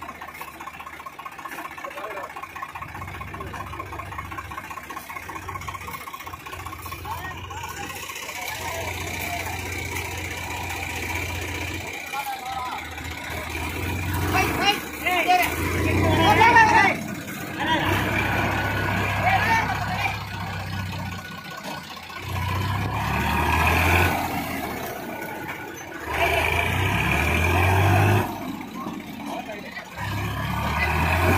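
Tractor diesel engines revving in repeated surges as they strain to tow a tractor stuck in mud, with men's voices over them.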